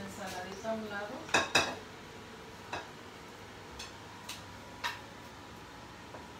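Kitchen utensils clinking against dishes: two loud sharp clinks close together about a second and a half in, then a few lighter clicks.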